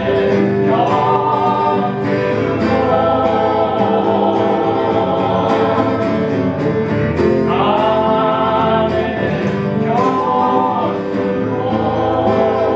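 Live acoustic folk song: a man singing lead with a woman's backing vocals over strummed acoustic guitars.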